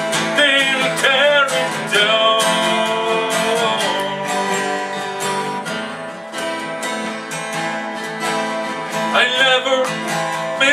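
Two acoustic guitars strummed together in a steady rhythm.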